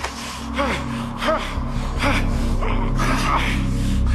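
A man gasping and choking in a series of short, strained breaths while being throttled, over dramatic background music that grows louder toward the end.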